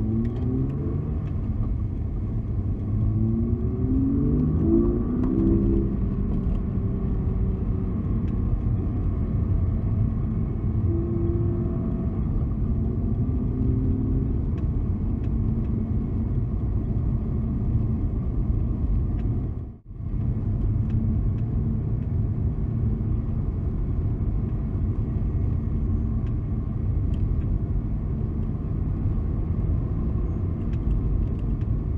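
BMW Z4 coupe's straight-six engine driving along a country road, with heavy tyre and road rumble. The engine note rises a few times in the first several seconds as it accelerates, then settles into a steady cruise. The sound drops out briefly about two-thirds of the way through.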